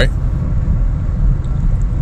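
A steady low rumble with little above it.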